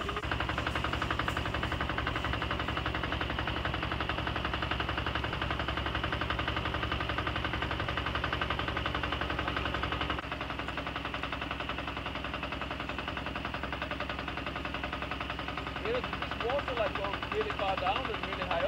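The engine of a small outrigger boat running steadily under way, a fast even chugging. It drops a little in level about ten seconds in.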